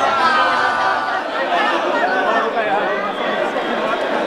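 Loud crowd chatter: many voices talking and calling out at once, none standing out.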